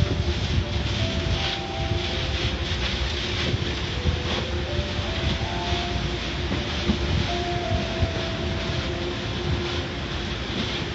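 Automatic car wash heard from inside the car: water spraying and rotating brushes scrubbing over the windshield, over a steady mechanical rumble with a faint hum.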